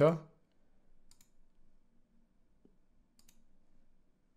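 A few faint computer mouse clicks: a couple about a second in and a couple more a little after three seconds.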